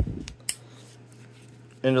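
A dull knock, then a sharp metallic click about half a second in, as a fuel-injector retaining clip is worked on a steel fuel rail. A low steady hum lies underneath.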